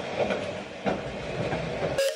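Handling noise from a camera being set down and shifted on a wooden coffee table: a steady rumble with a few knocks, about a second apart.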